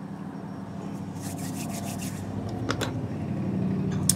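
Soft rubbing and handling sounds from makeup being worked on and things being handled close to the microphone, with a single click a little before three seconds in, over a steady low hum.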